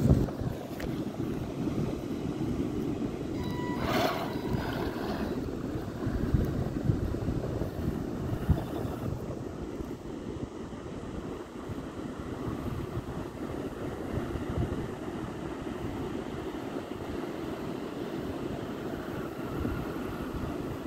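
Wind rumbling on the microphone with surf behind it, and about four seconds in a brief high whine from the RC buggy's electric motor as it drives off across the sand.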